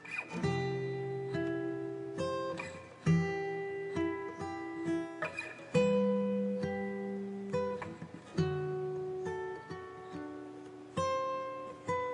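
Background music: acoustic guitar strumming chords, each left to ring out before the next.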